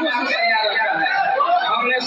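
Speech: several people talking at once, their voices overlapping.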